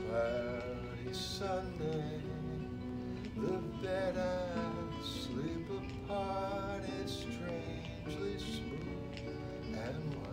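A recorded song plays back: the instrumental opening of a piano-and-guitar track taken from an old 1960s demo acetate. Wavering melody notes are held above the accompaniment in several short phrases.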